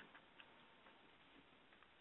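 Near silence on a telephone conference line, with a few faint ticks.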